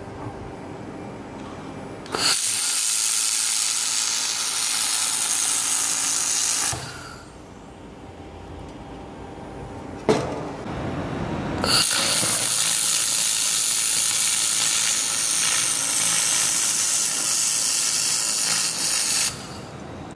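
Handheld fiber laser welder welding a sheet-metal corner joint: a loud, steady hiss in two runs, the first starting about two seconds in and lasting four to five seconds, the second starting about twelve seconds in and stopping shortly before the end.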